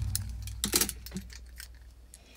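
Handling noise from a handheld phone moved over a top-load washing machine: a sudden thump at the start, then a low rumble that fades, with scattered light clicks and rustles.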